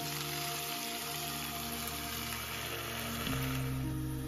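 Vegetables and meat sizzling in a cast iron skillet over a campfire, a steady hiss that fades out near the end. Under it runs background music with held notes that shift about three seconds in.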